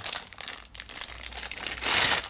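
Thin clear plastic bag crinkling as it is handled and opened, with irregular crackles throughout and a louder burst of rustling near the end.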